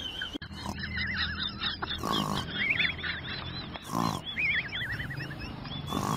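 A dog growling steadily, with high wavering whines, while it mouths a hard round ball. Two louder rough grunts come about two and four seconds in.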